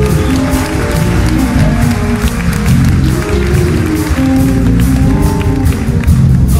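Live jazz-funk band playing: drum kit and electric bass under held notes from the saxophone and trumpet, with electric guitars and keyboards.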